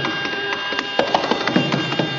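Mridangam strokes in an irregular run over a steady tambura drone in a Carnatic concert, some strokes with a bending bass tone.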